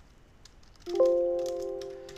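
A computer alert chime: several steady pitched tones that sound suddenly about a second in and fade away slowly, after a few faint keyboard clicks.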